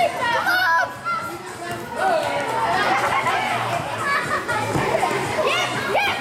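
Many children's voices shouting and calling out to one another during a handball game, overlapping and echoing in a large sports hall.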